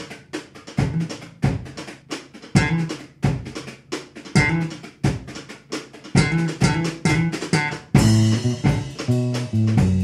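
Instrumental music on drum kit and electric bass: a drum groove of regular kick and snare hits with occasional bass notes. About eight seconds in, the electric bass comes in with a steady run of low notes under the drums.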